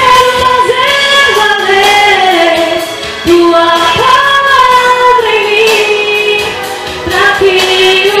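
A woman singing a slow gospel song over backing music, her long held notes sliding up and down in pitch, with short breaks between phrases a little past three seconds in and again near the end.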